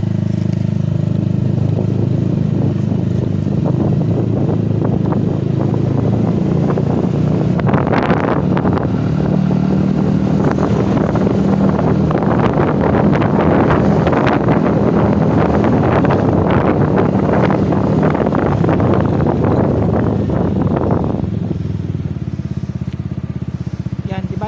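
Yamaha NMAX V2 scooter's engine pulling away and riding at about 30 km/h, with rushing wind and road noise over the engine while moving. Near the end the wind noise dies away as the scooter slows to a stop, leaving the engine idling.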